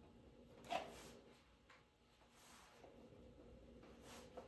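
Near silence: room tone, with one faint brief sound just under a second in.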